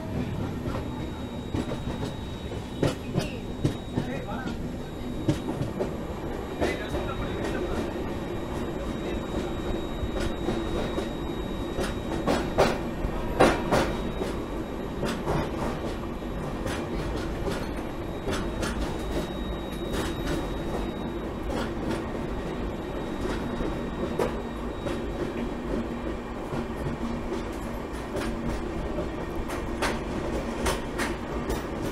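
Express passenger train coaches running at speed, heard from an open coach doorway: a steady rumble with repeated sharp clicks and knocks of the wheels over rail joints, with a louder cluster of knocks about twelve to fourteen seconds in.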